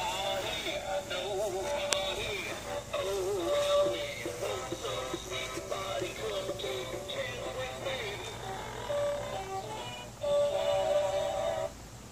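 A Halloween skeleton prop's built-in song playing from its sound module: recorded singing with music, triggered by motion in front of it. The song cuts off abruptly near the end.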